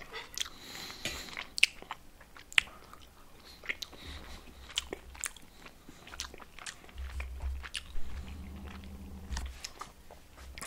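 A person chewing a mouthful of soft microwaved meatloaf, with scattered small wet clicks of the mouth. A low hum joins in near the end.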